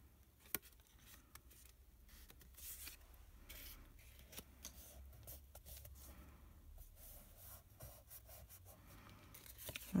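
Faint rustling and sliding of card stock as panels are handled, lined up and pressed down by hand, with a single light click about half a second in.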